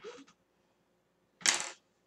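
A short, sharp clack of makeup tools being handled and set down, loudest about a second and a half in, with a faint brief sound at the very start.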